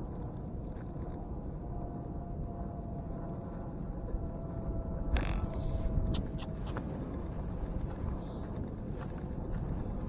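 Wind rumbling on a bicycle's handlebar-mounted camera microphone as the bike rides across beach sand, with a cluster of sharp clicks and rattles from about halfway through.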